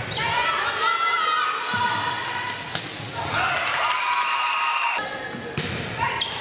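Volleyball rally in a gym: players' high shouts and calls over one another, with a few sharp smacks of the ball, echoing in the hall.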